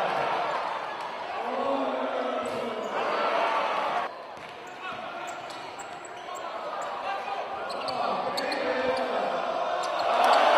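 A basketball bouncing on a hardwood gym floor as it is dribbled, with spectators' voices and chatter filling a large hall. The sound drops off suddenly about four seconds in, and short high squeaks follow in the second half.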